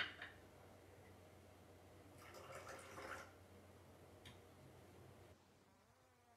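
Near silence: faint rustling of paper bags being handled, with a short click at the start and a small tick about four seconds in.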